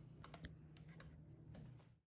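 Near silence: a few faint clicks in the first second from hands handling a handheld pH meter and its electrode cable, over a faint low hum.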